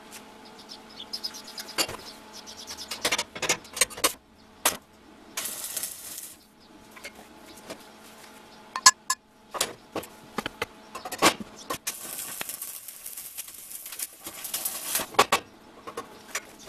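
Steel being knocked and tapped with a hammer, in many short metallic knocks, with two spells of arc-welding crackle: one about a second long around six seconds in, and a longer one of about three seconds from twelve seconds in.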